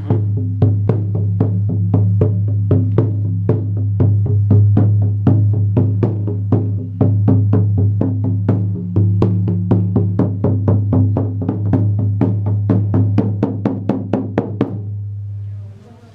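Octagonal ceremonial frame drum beaten steadily at about three strikes a second, its deep boom ringing on continuously under the strikes. The beating fades and stops near the end.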